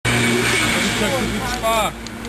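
Vespa scooter's two-stroke engine running steadily at idle, with men's voices over it. The engine won't rev up properly, which the riders put down to an air leak.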